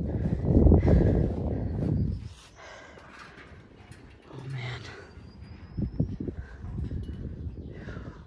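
Wind rumbling on the microphone, loudest for the first two seconds, then a climber's breathing and a few light knocks from footsteps on the steel stairs of a tower.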